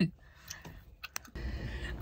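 A few soft, sharp clicks over quiet background, then a steady low room noise starts about a second and a half in.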